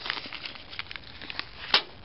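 A small plastic bag of metal nuts and bolts rustling, with light clicks of metal as a hand picks out a nut, and one sharp click near the end.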